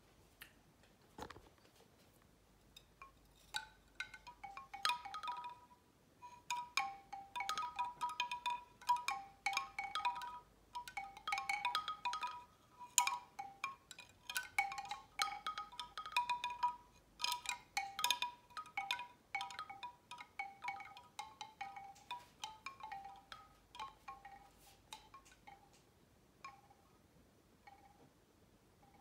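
Bamboo wind chime clattering: its hollow tubes knock together irregularly, each clack with a short woody ringing tone. The knocking builds up a few seconds in and thins out toward the end.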